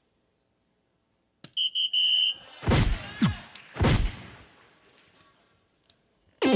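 A soft-tip dart strikes the DARTSLIVE electronic dartboard with a sharp click about one and a half seconds in, scoring a triple 20. The board answers with its electronic sound effects: a quick run of high beeps, then two loud falling whooshes with low thuds that fade away.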